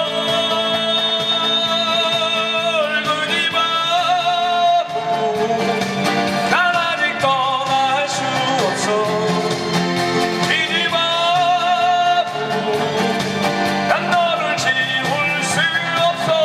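A man singing live in long held notes, accompanied by two strummed acoustic guitars, all amplified through PA speakers.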